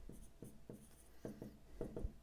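Faint scratching and tapping of a stylus writing on a tablet, in several short strokes.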